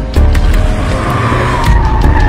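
Car tyres squealing in a skid, starting about a second in and sliding slightly down in pitch, over loud film action music with a heavy beat.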